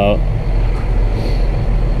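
John Deere 6170R tractor's Tier 4 six-cylinder diesel engine idling steadily, heard from inside the cab as an even low hum.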